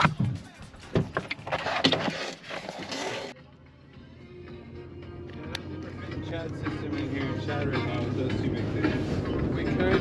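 A car door pulled shut with a knock at the start and a second knock about a second in, over music from the car radio. The music cuts out suddenly after about three seconds and builds back up slowly over a low steady hum, with a seatbelt latch clicking near the middle.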